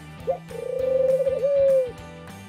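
Ringneck dove cooing: a short rising note, then one long drawn-out coo held at a steady pitch with a slight waver near the end.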